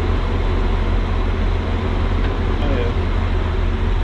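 Steady low rumble of a stationary train standing at a platform with its doors open, its engine and equipment running, with faint voices in the background.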